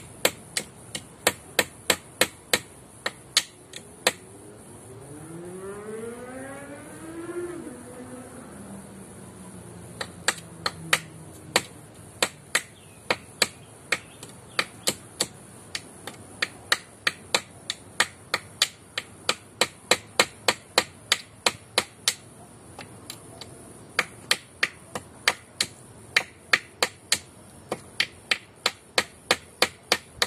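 A hammer striking a nail into a wooden pole in steady, sharp blows about three a second, pausing for several seconds. During the pause a quieter engine rises in pitch and then settles.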